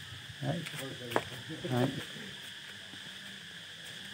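Steady high-pitched insect chorus in the background, with a single sharp click about a second in.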